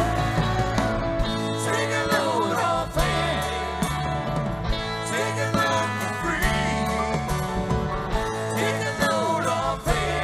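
Live rock band playing an instrumental jam: electric guitars, bass guitar and drum kit, with a lead melody that bends up and down over a steady low end.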